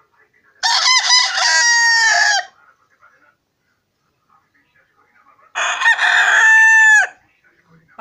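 Rooster crowing twice, about three seconds apart, each crow close to two seconds long and ending in a held note that drops in pitch as it cuts off.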